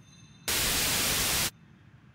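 A one-second burst of static hiss that starts and stops abruptly, like an audio glitch in the broadcast, over faint room tone.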